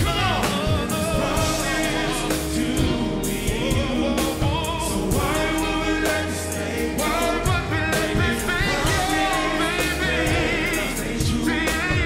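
Live R&B performance: a male vocal group singing in harmony with long, wavering held notes over a live band of drums, bass and keyboards.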